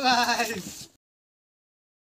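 A short, wavering bleat-like call, then the sound cuts off suddenly to dead silence about a second in.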